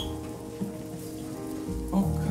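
Soft sustained ambient music chords over a steady rain-like patter, with a low thud near the end.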